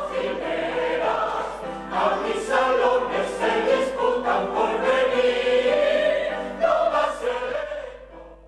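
A mixed choir of men's and women's voices singing together, dropping in level near the end.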